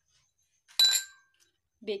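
A small glass bowl clinks once against a dish, with a short bright ring that fades quickly.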